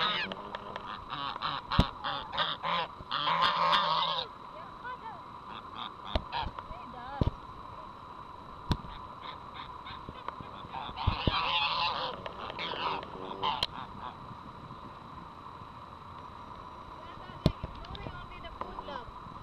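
Domestic geese honking in two bouts, one through the first four seconds and another about eleven to thirteen seconds in, with a few sharp clicks between and near the end.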